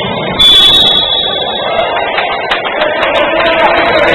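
A single loud, high-pitched signal blast, one steady tone lasting a little over a second, starting just under half a second in, over the steady noise of a basketball hall. A few short knocks follow later on.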